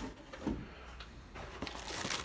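Faint rustling and crinkling of clear plastic parts bags being handled in a cardboard kit box, growing from about halfway through.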